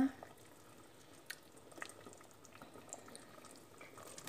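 Pot of soup broth simmering on a stove: faint bubbling with a few scattered small pops.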